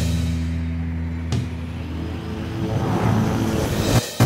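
Cinematic title music: a sustained low chord fades away, a sharp hit lands just over a second in, then a low rumbling swell builds and cuts off suddenly at the end.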